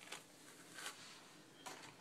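Near silence, with a few faint, brief rustles of a styling brush drawn through product-coated hair.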